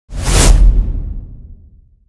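An intro whoosh sound effect for an animated logo: a sudden loud swoosh with a deep boom underneath, peaking about half a second in and fading away over the next second and a half.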